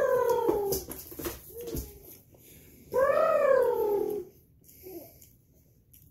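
A baby vocalizing: two long, drawn-out squealing calls, each rising and then falling in pitch over about a second and a half, the second starting about three seconds in.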